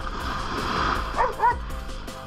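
Background music with two short, pitched dog barks close together about a second and a quarter in.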